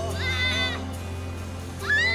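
A young child's high-pitched call, held briefly and falling off at the end, with another call rising near the end, over background music.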